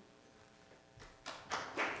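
Near silence, then audience applause starting about a second in and building.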